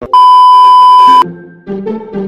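An electronic test-tone beep, the kind played over TV colour bars, holds one steady high pitch for about a second and then cuts off sharply. Light background music with short stepping notes begins right after.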